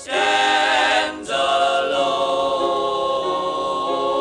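Male gospel quartet singing in close harmony, with a brief break about a second in and then a long held chord.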